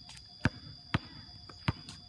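Basketball dribbled on a concrete court: three sharp bounces, the first two about half a second apart and the third a little under a second later.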